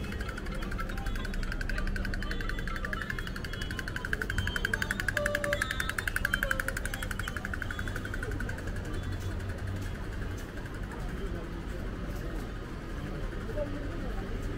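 Busy shopping-street ambience: voices of passers-by and music, over a steady hum of street noise. A rapid rattling buzz rises for a few seconds in the middle and fades.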